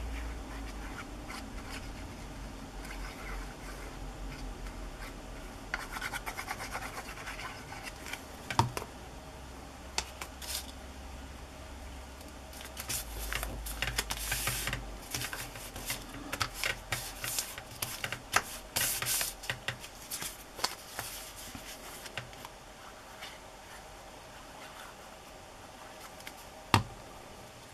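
Fingers rubbing and smoothing glued paper down onto a paper tag, with paper rustling in intermittent bursts and scattered small taps and clicks.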